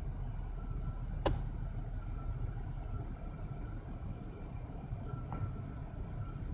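Steady low rumble of a car's interior, with one sharp click about a second in.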